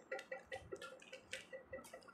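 Plastic windmill cube puzzle being turned by hand, its layers clicking faintly in quick succession, several clicks a second.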